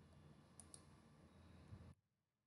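Two quick computer mouse clicks, a split second apart, advancing a presentation slide, over faint low room hum that cuts off suddenly near the end.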